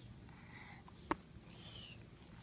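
A sharp click about a second in, then a short ripping hiss near the end as the hook-and-loop strap of a toddler's sneaker is pulled open.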